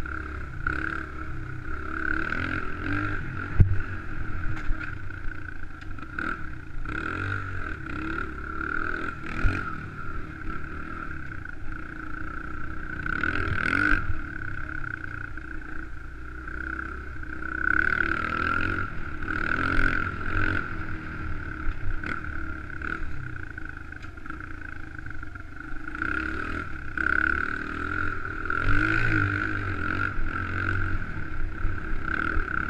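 Honda XR100R dirt bike's small four-stroke single-cylinder engine running under way, its revs rising and falling with the throttle every few seconds. A few sharp knocks come through as the bike rides over bumps.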